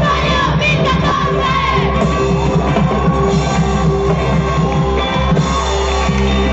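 Live gaita music from a band on a loudspeaker system, with singing and the audience shouting along.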